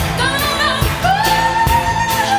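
Live pop music: a band plays over a steady drum beat while a woman sings. About a second in she starts a long held note.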